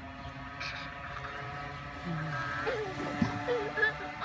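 Young children making a few short, high vocal sounds in the second half, over a steady mechanical hum.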